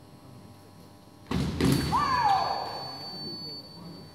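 Sabre bout action: a sudden thump about a second in, then the electric scoring box's steady high tone signalling a touch, with a fencer's shout falling in pitch over it.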